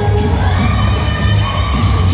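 Loud dance music with a heavy bass beat, and an audience cheering and shouting over it.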